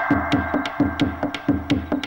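Background music with a steady percussion beat of about four strokes a second under a held, buzzy synthesizer tone.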